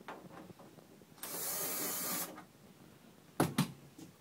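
Cordless drill/driver running for about a second to loosen the hose clamp on a foil dryer vent duct, followed by a short, louder clatter of the clamp and duct being handled near the end.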